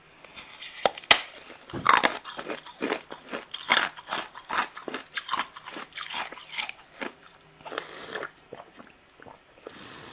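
Ice being bitten and crunched in the mouth: a quick run of sharp crunching bites into a ring of frozen ice, several a second, the loudest bites about two seconds in. A faint steady low hum sits underneath.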